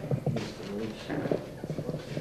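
Footsteps of shoes on a hard floor, a few irregular steps, with faint indistinct voices in the background.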